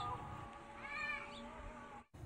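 A short animal cry that rises and then falls in pitch, about a second in, with a few brief high chirps around it. A steady hum with several tones stops just after the start.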